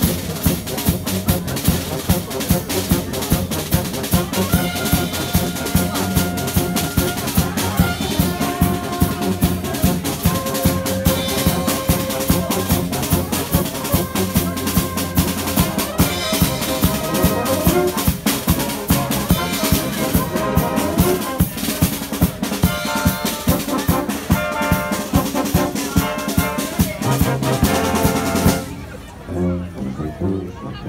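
Brass band with drum kit playing a TV-theme medley: held brass notes over a steady beat of drum and rimshot hits. The music cuts off near the end.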